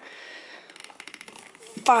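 Hand grease gun being pumped into a sealed wheel hub bearing through an added grease fitting, forcing grease into the bearing. There is a quick run of small clicks in the second half of the stroke, then a spoken count at the end.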